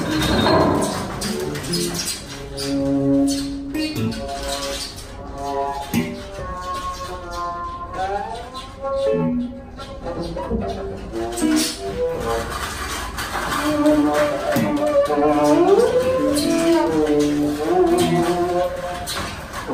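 Free improvisation on bowed double bass, electric guitar, piano and tap board: sustained tones that slide up and down in pitch, with a few sharp knocks scattered through.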